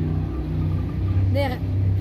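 Jet boat's engine running steadily as the boat passes close by, a low even drone.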